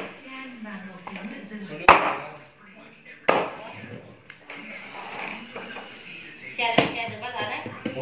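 Large cleaver chopping through a whole roast suckling pig onto a thick round wooden chopping board: three sharp chops, two about two and three seconds in and one near the end.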